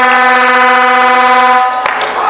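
A horn sounding one long, steady, loud note for about two seconds, then cutting off suddenly near the end.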